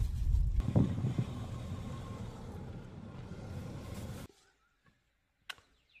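Car running on a road, heard from inside the cabin: a heavy low rumble at first that eases into a steadier, fading road noise and stops abruptly about four seconds in. After that, near silence with one faint click.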